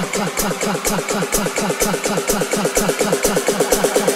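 Electronic dance music from a house/tech house DJ mix: a fast, evenly repeating buzzy synth stab over a kick drum and hi-hats.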